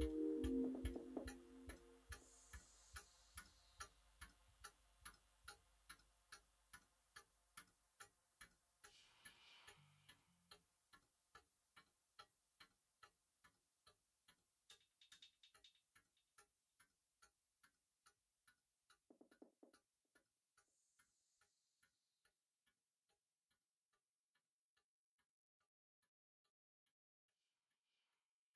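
A held synthesizer chord dies away at the start, leaving a dry electronic tick about twice a second that fades steadily down to near silence.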